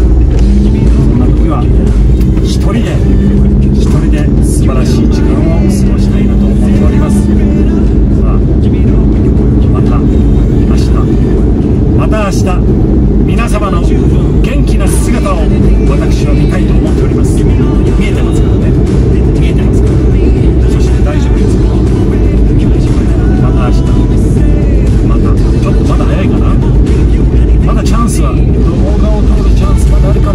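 Steady road and engine noise inside a moving car's cabin, with a man's voice and music over it.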